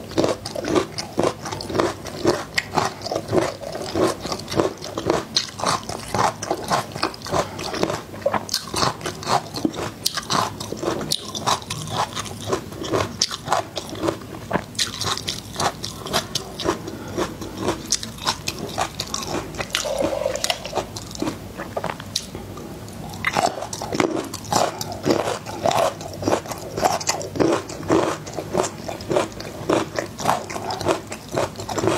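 Close-miked chewing of peeled garlic cloves: a fast, steady run of crisp crunches and bites, quieter for a few seconds past the middle.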